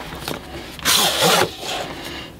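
Snug cardboard lid of a retail box sliding off its base: a rasping, scraping swoosh of about half a second near the middle, with a few light knocks of cardboard around it.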